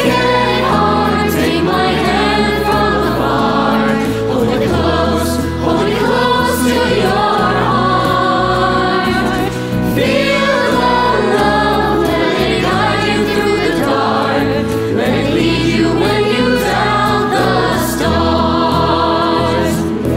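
Music: a choir of young voices singing a song over full band accompaniment with a moving bass line.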